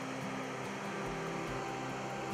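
A steady low mechanical hum with a light hiss, holding an even level.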